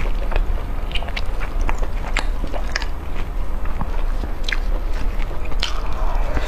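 Close-miked chewing and biting of stewed pork knuckle: wet mouth sounds with irregular sharp clicks and smacks.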